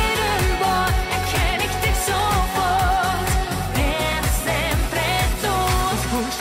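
Schlager pop song: a woman singing long held notes with vibrato over a steady, evenly spaced drum beat.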